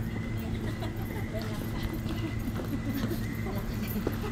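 Footsteps on brick pavers, with voices talking in the background and a steady hum.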